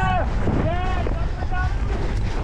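Wind rumbling on the microphone, with three short high shouts from a voice.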